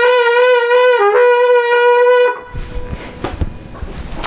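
Trumpet holding one long note with vibrato, dipping briefly to a lower pitch about a second in and coming back, then stopping about two seconds in. Soft low rustling and a few knocks follow.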